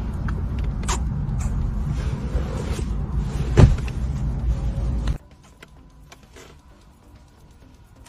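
Lip smacks of kisses blown at the camera over a low, steady car-interior rumble, the loudest smack about three and a half seconds in. The rumble cuts off abruptly about five seconds in, leaving much quieter sound with faint ticks.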